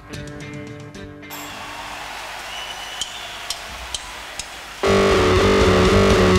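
Live rock band recorded from the mixing desk. About a second in, quiet music cuts off into a steady hiss with a few clicks. Near the end the full band comes in suddenly and loud with electric guitar and bass.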